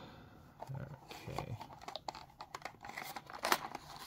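Taped end flap of a small cardboard box being pried open with a thin tool: cardboard and tape crinkling and tearing, with a run of short sharp crackles, the loudest about three and a half seconds in.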